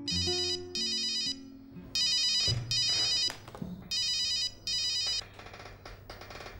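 Mobile phone ringing with an electronic double-ring tone: three ring-rings about two seconds apart.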